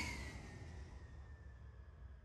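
Tail of a fly-by whoosh sound effect fading out, with a faint tone gliding slowly downward.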